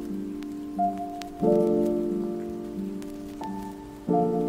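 Lo-fi hip-hop instrumental: sustained keyboard chords ringing and fading, with a new chord struck about a second and a half in and a higher note added near the end. A sparse crackle of faint clicks sits over it, a texture PANN reads as rain.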